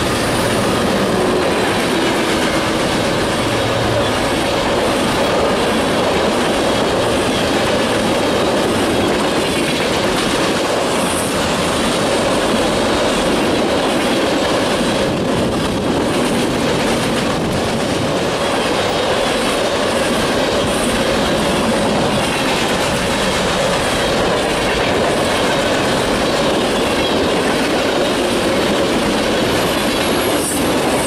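Long freight train of tank cars and hoppers passing close by at speed: a loud, steady rolling noise of steel wheels on the rails with a steady ringing hum.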